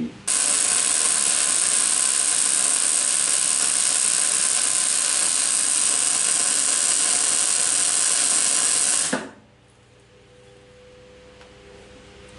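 Wire-feed welder's arc burning steadily while a bead is laid around a round workpiece turning in a welding rotator, building up material on the part. It starts just after the beginning and cuts off suddenly about nine seconds in, leaving only a faint hum.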